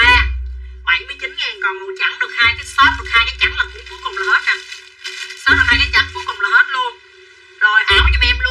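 A woman talking quickly over background music with deep bass pulses, pausing briefly near the end.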